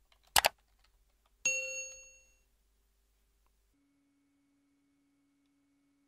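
A sharp click, then a single bell-like ding about a second later that rings out and fades within a second: the notification chime of an animated subscribe-button overlay.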